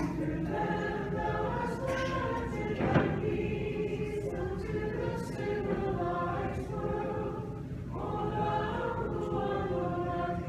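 Church choir singing an Orthodox liturgical hymn in several voices, with a new phrase beginning near the end. A single sharp knock about three seconds in.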